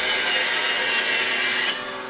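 Steady scraping, rasping sound effect of an animated logo sting, fading out near the end.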